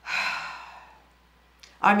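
A woman's breathy sigh, an audible exhale that fades away within about a second.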